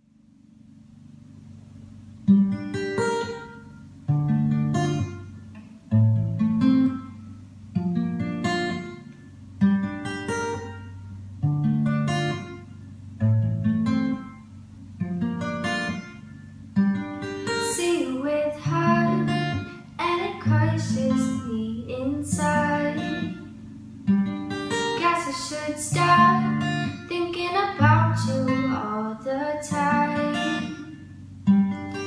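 Acoustic guitar strummed in an even rhythm, one chord stroke about every one and a half to two seconds, fading in from silence with the first strum about two seconds in. A young woman's singing voice joins the guitar about halfway through.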